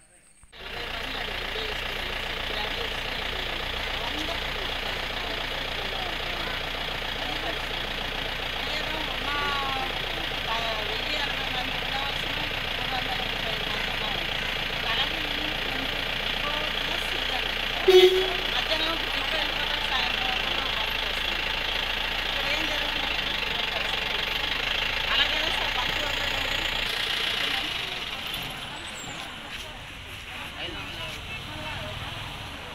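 A diesel generator set, KOEL (Kirloskar) make, running with a steady engine drone, and people's voices heard over it. About eighteen seconds in comes one short, loud sound, and the drone fades near the end.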